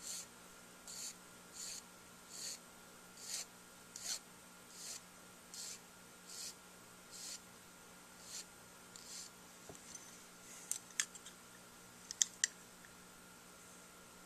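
Needle file rasping on the tip rail of a metal Dukoff D9 saxophone mouthpiece, thinning the rail from the outside. There are about a dozen short, light strokes, roughly one every 0.8 s. These stop about nine seconds in, and a few sharp light clicks follow.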